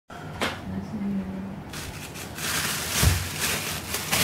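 Thin plastic shopping bag rustling and crinkling as it is handled, starting a little before halfway, with a dull thump near the end.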